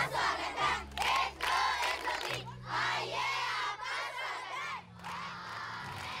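A crowd of schoolchildren calling out a welcome together in unison, in short repeated phrases.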